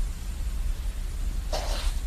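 A short, noisy breath from a woman about one and a half seconds in, over a steady low rumble.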